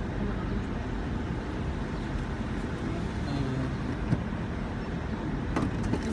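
Car engine idling, heard from inside the cabin as a steady low rumble, with one sharp click about four seconds in and a few more clicks near the end.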